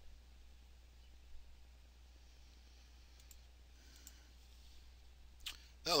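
A few faint, sparse computer mouse clicks over a steady low hum. A man's voice starts right at the end.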